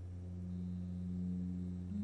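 Low, steady drone of a few held tones, stepping slightly higher in pitch just before the end.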